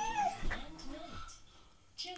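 A baby's short, high squealing cries that rise and fall, mostly in the first second, with a single knock about half a second in.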